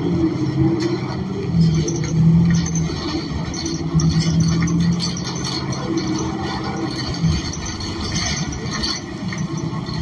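New Flyer XN40 city bus under way, heard from inside the rear of the cabin: the Cummins Westport ISL G natural-gas engine and drivetrain droning over steady road noise, with a low hum that swells and fades every second or so.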